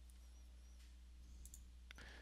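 Near silence: a faint steady low hum of room tone, with two faint computer mouse clicks near the end.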